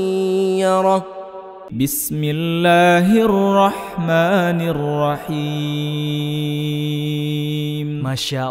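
Melodic, drawn-out Quran recitation by a man, ending on a long held note about a second in. After a brief drop, a second, lower male voice recites in the same style with long sustained notes.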